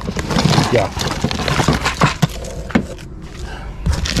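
Rustling and a rapid run of small clicks and clatters as a cardboard box full of papers and small trinkets is pulled open and rummaged through by hand.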